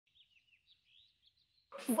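Faint birds chirping in short, repeated calls. Near the end a woman's voice cuts in.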